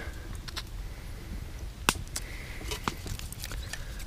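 Small kindling fire of fatwood shavings and feather sticks crackling as dry wood chips are laid onto it by hand: scattered small clicks, with one sharper snap about two seconds in.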